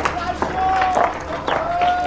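Street ambience: faint distant voices calling, with scattered sharp clicks and knocks over a low steady hum.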